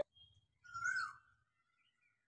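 A bird calling once, a little over half a second in: a short note that holds its pitch and then drops at its end.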